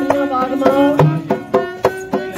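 Punjabi folk music: a bowed sarangi plays a sliding melody over a held low note, while a dholak hand drum keeps up a steady beat of strokes.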